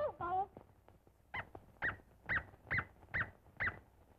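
Six short, high yelps in a row, about two a second, each rising and falling in pitch. They come after a brief gliding squeal at the very start.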